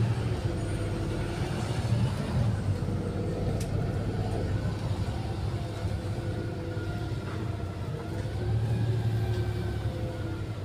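Bus running along the road, heard from inside the passenger cabin: a steady low drone with faint whining tones that rise and fall slowly. A brief click sounds a few seconds in.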